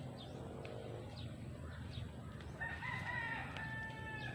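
A rooster crowing once in the second half, a drawn-out call that wavers at the start and then holds steady. A few short, faint chirps come before it.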